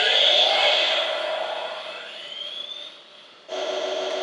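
Transformers Energon Megatron's Sword toy playing its electronic switch-on sound effect: a jet-like whoosh with a high whine rising in pitch, fading away. About three and a half seconds in, it cuts suddenly to a steady, quieter hum as the sword is left switched on.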